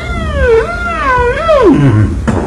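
Beatboxer's high-pitched vocal whine, a wavering cat-like tone that swoops up and down, then drops steeply in pitch near the end, over a steady low rumble.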